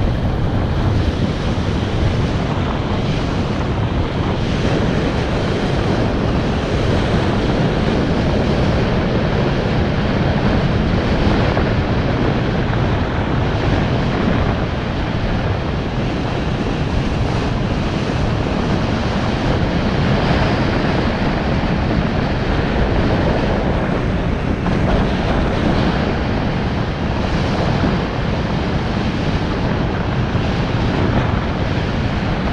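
Loud, steady wind noise on the microphone of a camera moving along a road, an even rushing strongest in the low end with no breaks.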